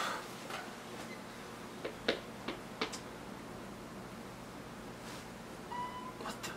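Quiet room tone with a few short, light taps between about two and three seconds in.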